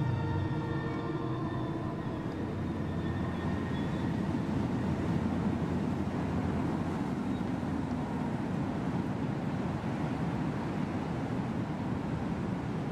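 Low, steady rumbling drone in a horror-film soundtrack. Sustained eerie music tones fade out over the first few seconds, leaving the rumble on its own.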